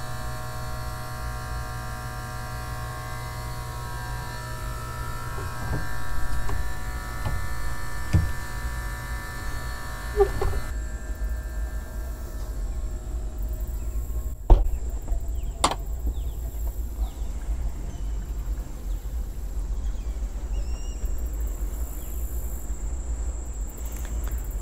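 Steady machinery hum in a boat's engine room, with many even tones over a low rumble, cutting off suddenly about ten seconds in. Then a quieter low rumble with a thin high whine, and two sharp clicks a second apart past the middle.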